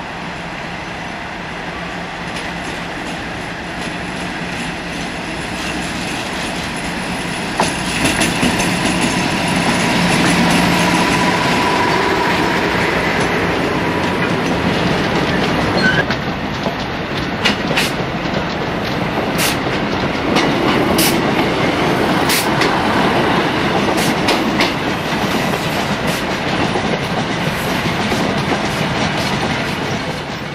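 A Class 56 diesel locomotive hauling a rake of coal hopper wagons runs past with a steady low engine drone and wagon rumble that grows louder, with a thin whine for a few seconds near the middle. Then a Class 153 single-car diesel unit pulls away over the points, its wheels clicking sharply over the rail joints several times.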